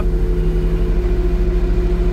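Engine of an old military extending forklift running steadily under load, heard from inside its cab, a fast low pulsing with a steady whine over it as the forks lift. One of the whining tones fades about halfway through.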